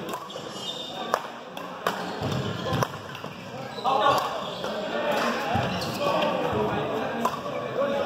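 Badminton doubles rally in a gym: sharp racket hits on the shuttlecock, a second or so apart at first, with voices echoing in the hall.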